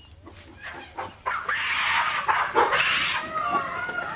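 Gorillas screaming: a few short sounds, then loud harsh screams from about a second and a half in, giving way to wavering, gliding calls near the end, in an aggressive clash between a young female and a silverback.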